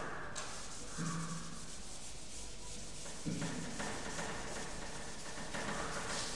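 A board duster wiping chalk off a chalkboard in long rubbing strokes, a new stroke starting about a second in and another just past three seconds.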